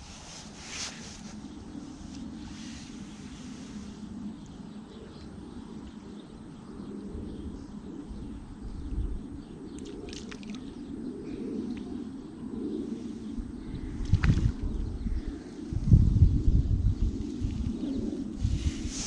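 Outdoor riverbank ambience: a steady low rumble with a few short bird chirps now and then, and heavier low buffeting, like wind on the microphone, near the end.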